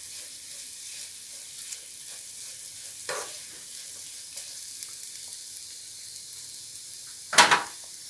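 Food frying with a steady sizzle in a nonstick pan while a spatula stirs spice powder through it, making light scrapes and clicks against the pan. A single sharp knock sounds near the end.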